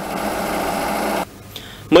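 Sumitomo forklift engine running with a steady mechanical rattle, cut off abruptly just over a second in.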